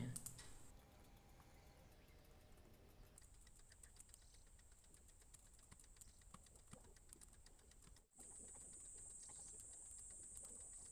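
Near silence: faint background hiss with scattered faint ticks, and a thin steady high tone that comes in about three seconds in and grows slightly louder after a brief dropout near the end.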